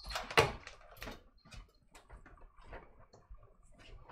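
Small clicks and taps of fingers pressing a front-panel USB header connector onto motherboard pins inside a PC case, with a sharper clack about half a second in.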